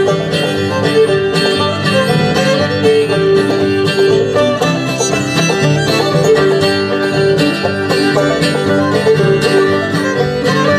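Bluegrass band playing an instrumental break on banjo, acoustic guitar and upright bass, with no singing.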